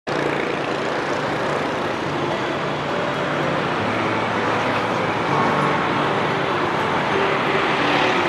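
Steady street traffic, mostly motorbike and scooter engines running together in a continuous hum with no single vehicle standing out.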